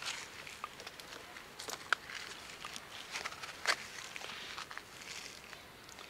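Footsteps crunching irregularly over dry grass and loose stony ground, with scrapes and crackles, and two sharper clicks about two and nearly four seconds in.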